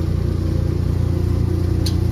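Steady, loud, low machine drone, with one brief sharp click near the end.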